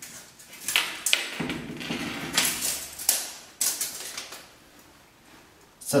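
Handling noise from a large MDF panel being moved against a wall and onto a tile floor: several light knocks and scrapes over the first few seconds, then quieter near the end.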